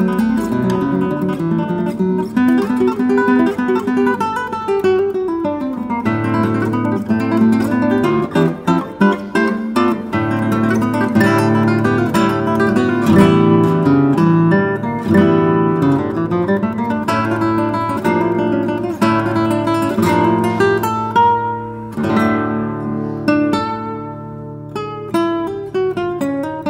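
Solo classical guitar, a 1967 Daniel Friederich, played fingerstyle: runs of plucked notes mixed with full ringing chords.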